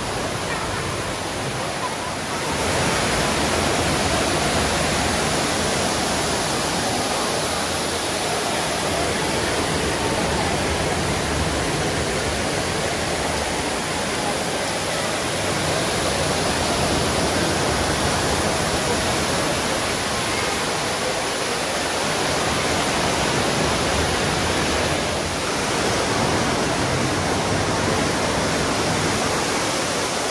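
Steady rush of water falling from the mall's Rain Oculus, the glass ceiling bowl that pours a waterfall into the indoor canal pool below.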